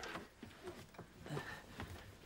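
A few faint clicks and soft knocks in a quiet room: a door being unlatched and opened.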